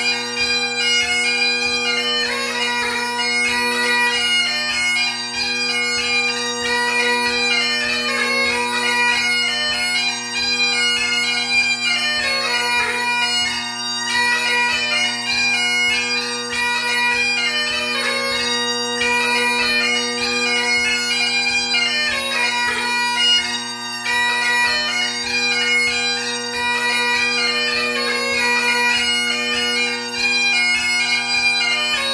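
Great Highland bagpipe playing a jig: a quick, ornamented chanter melody over steady, unbroken drones.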